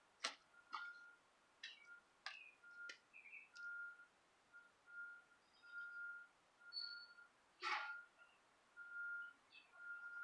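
Faint soft clicks and rustles of fingers pressing flake tobacco into a pipe bowl, with one slightly louder rustle about three-quarters through. A faint, steady high whistle-like tone comes and goes in short, irregular pulses throughout.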